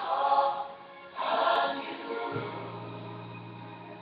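Choir singing, with two louder swells in the first two seconds, then a low note held under quieter voices.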